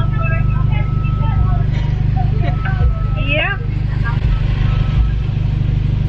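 Car engine idling, heard from inside the cabin as a steady low rumble. A faint voice talks over the drive-through intercom.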